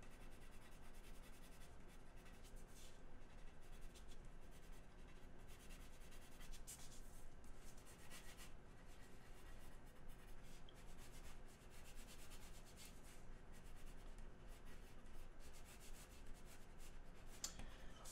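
Faint scratching of a blue pencil sketching on an 11 by 17 drawing board: a continual run of short strokes, with busier flurries now and then.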